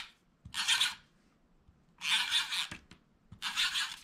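A handheld tape runner laying a strip of double-sided adhesive along the back of a paper mat. Three short strokes with near-quiet gaps between them; the middle stroke is the longest.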